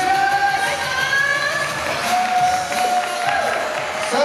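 Music playing through a sports hall's sound system, with crowd noise and some cheering from the stands beneath it.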